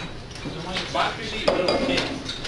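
A few sharp clinks and clatters of small hard objects being handled on a desk, the loudest about a second and a half in, over low classroom chatter.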